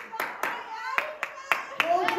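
Hands clapping in a steady rhythm, several claps a second, with people's voices in the background.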